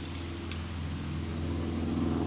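Steady low engine-like hum, a deep even drone that grows slightly louder toward the end.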